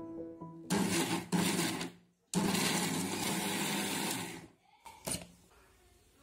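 Electric kitchen mixer grinder grinding ripe jackfruit with jaggery into a paste: two short pulses, a brief pause, then a steady run of about two seconds that stops. A single knock follows near the end.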